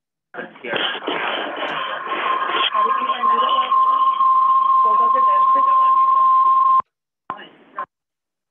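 Audio feedback on a video call: a garbled, echoing jumble of room sound builds into a single steady whistling tone that holds for about four seconds and cuts off suddenly, followed by a short burst of the same garble. The feedback comes from two conference rooms on the call sitting right next to each other, their microphones and speakers picking each other up.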